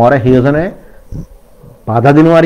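Speech only: a man talking, with a pause of about a second in the middle.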